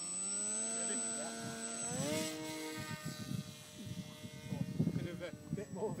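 Small RC flying wing's electric motor and propeller whining, rising in pitch as the throttle is opened. The pitch jumps higher about two seconds in, then holds steady and grows fainter as the wing flies away.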